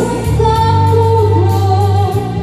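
A woman singing a Vietnamese ballad live into a microphone, holding one long note and then moving into the next phrase near the end, over a keyboard backing with a steady bass line and a light drum beat.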